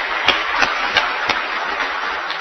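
Steady applause from a room full of people clapping, with a few louder single claps standing out in the first second or so.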